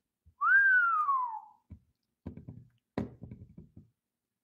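A man whistling one gliding note that rises briefly and then falls away over about a second, followed by a few soft low knocks and one sharper click near the end.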